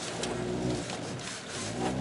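Hyundai Veloster N's turbocharged 2.0-litre four-cylinder engine running at low revs, heard from inside the cabin, as the car begins to push through deep mud with traction control switched off.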